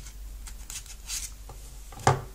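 Faint handling noise: light rubbing and a few small ticks as a woven paracord keychain is handled and a slim metal lock-pick is drawn out of it, over a low steady hum.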